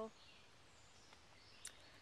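Near silence: faint outdoor ambience, with a tiny faint tick or two.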